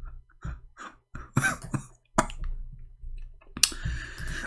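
A few irregularly spaced computer mouse clicks, the sharpest about three and a half seconds in.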